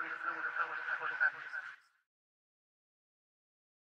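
End of an experimental industrial music track: a spoken voice over a steady high tone, which cuts off abruptly about two seconds in, followed by silence.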